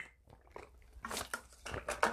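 Faint gulping as a man drinks water from a canteen, followed near the end by a few light knocks as the canteen is set down.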